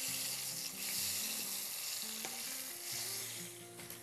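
Flour-dusted courgette slices sizzling in shallow hot oil in a pan, a steady frying hiss.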